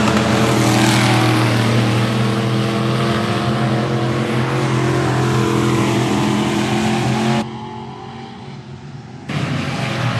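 Midwest modified race cars' engines running hard around a dirt oval, a loud steady drone of several engine tones with pitch rising and falling as cars pass. About seven and a half seconds in the sound drops abruptly to a quieter, muffled noise for about two seconds, then the engines return at full level.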